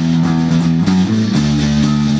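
Electric guitar and bass guitar playing a punk-rock song together, held chords changing every second or so.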